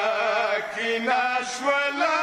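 Men's voices chanting a Shia lament (noha) without instruments, in long held notes that waver in pitch, with a change of note near the end.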